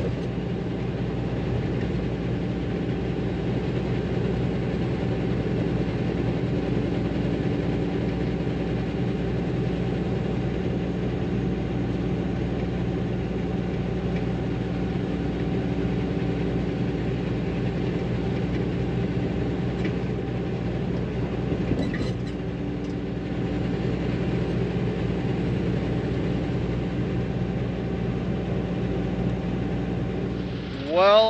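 International semi-truck's diesel engine running at a steady cruise with road noise, heard from inside the cab at highway speed. There are a couple of faint clicks a little past the middle.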